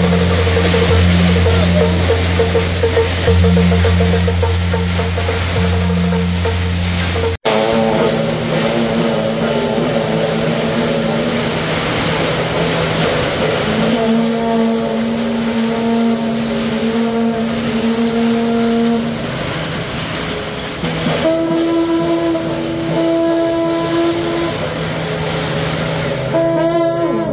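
Long brass shaojiao processional horns blowing long, held low notes that overlap and change pitch every few seconds. Before them, for the first seven seconds, procession music plays with a steady low drone and pulsing beat, and it breaks off at a cut.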